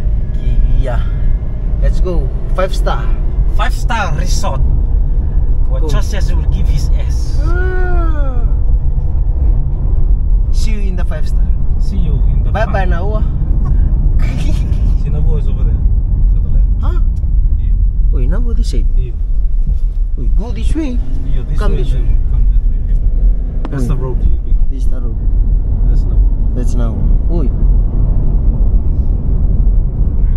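Steady low rumble of a car in motion, heard from inside the cabin, with people talking over it.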